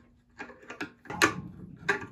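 Curing turntable plate being pressed onto a resin wash-and-cure station and turned to seat it in its grooves, clicking and knocking against the housing. A few light ticks come first, then two louder clicks, one in the middle and one near the end.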